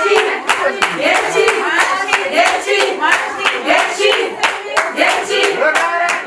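A group of people clapping their hands in a steady, even beat while women's voices sing along.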